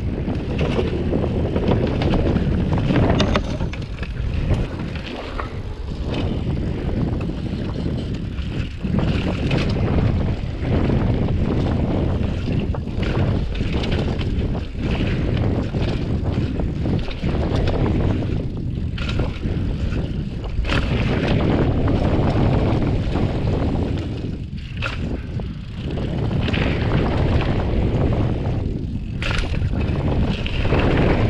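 Wind rushing over an action camera's microphone, with tyre and drivetrain noise from a hardtail cross-country mountain bike riding fast down a dirt trail. Frequent knocks come from the bike jolting over bumps.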